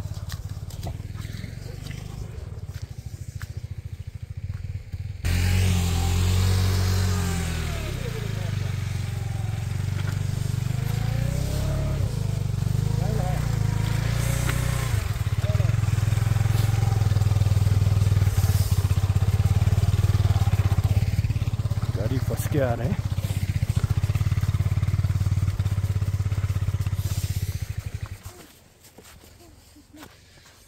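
Motorcycle engine running hard with its revs held steady while people push the bike through snow, growing louder over several seconds and then cutting out about two seconds before the end. Voices call out over it.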